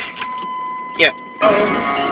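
A steady high tone holds under a man's brief speech and stops about a second and a half in.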